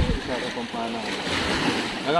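Small lake waves splashing against the shore and the boat's hull, a rushing wash that swells about a second in, with a low thump at the very start.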